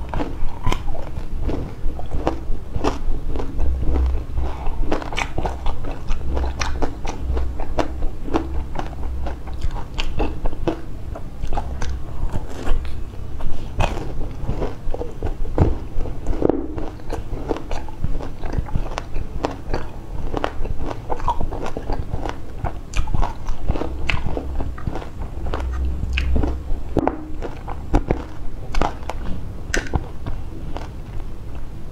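Close-miked biting and chewing of tanghulu, candied fruit on a skewer: the hard sugar shell cracks in many sharp, closely spaced crunches all through, with chewing in between.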